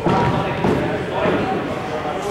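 Indistinct voices echoing around a large indoor sports hall. A cricket ball comes off the bat with a sharp knock near the start.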